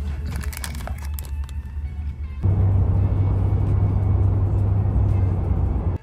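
Car cabin on the move: a steady low road and engine rumble that gets suddenly louder and fuller about two and a half seconds in, with background music over it.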